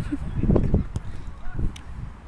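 A man laughing close to the microphone, with sharp clicks about a second in and again near the end.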